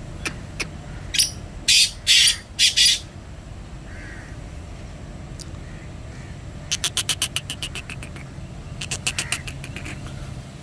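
Black francolin giving short harsh calls: a few scratchy notes between about one and three seconds in, then fast chattering runs near seven and nine seconds.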